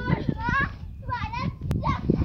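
A child's high-pitched wordless cries while playing, two short calls with rising and falling pitch, over a steady rumble of wind on the microphone.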